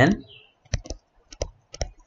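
Stylus tip tapping on a tablet surface as handwriting is written, heard as a scatter of sharp clicks, a few at first and then several in quick succession in the second half.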